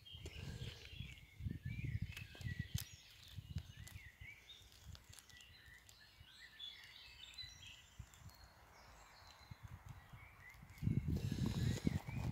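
Quiet outdoor ambience: faint, distant birds chirping, with irregular low rumbles that are strongest in the first few seconds and again near the end.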